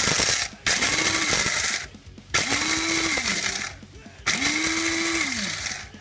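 Electric blade coffee grinder pulsed in four short bursts, grinding whole coffee beans to a coarse grind. In each burst the motor's whine rises as it spins up and sinks as the lid button is let go.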